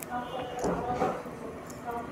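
A metal spoon clinking and scraping in a ceramic bowl of haleem, with a sharp click at the start and a few light clicks later, over a murmur of background voices.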